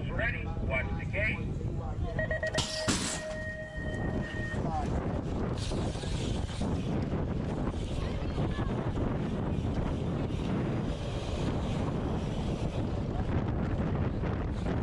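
BMX start-gate sequence: a steady electronic start tone sounds about two seconds in, and the start gate slams down with a loud clang partway through it. After that, steady rushing of tyres on the dirt track and wind on the microphone as the bike races down the start hill.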